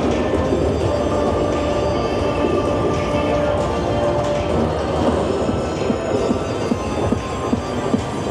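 Zeus-themed video slot machine playing its bonus-round music and sound effects over a dense, steady casino din, with a scatter of short clicks in the second half.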